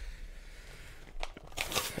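Paper pages of a book tearing in a short rasp about a second and a half in, after a few light rustles and clicks.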